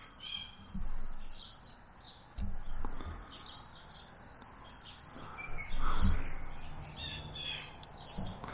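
Birds calling repeatedly in short high calls, with several dull thumps from hands handling a stick and a carving tool close by, the loudest about six seconds in.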